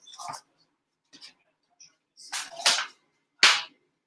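A few short, sudden rustles and clicks of hands picking up a digital caliper and handling tools, the sharpest about three and a half seconds in.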